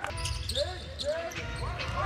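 A basketball being dribbled on a hardwood court, a few scattered bounces over a steady low arena rumble, with faint voices.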